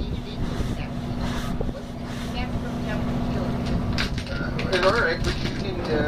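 A boat's engine idling with a steady low drone, and voices briefly heard a little past two-thirds through.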